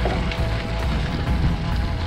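Background music with a steady beat and sustained tones.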